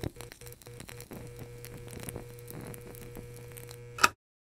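Electrical buzz of a neon sign: a steady hum with constant crackling and sputtering as the tubes flicker and light up. The hum stutters briefly near the start and ends in a sharp, louder crackle before cutting off suddenly.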